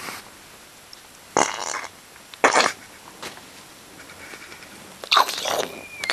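Three short, breathy bursts of stifled laughter close to the microphone, the last the longest.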